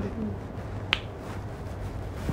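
A single sharp click about a second in, over a steady low background hum.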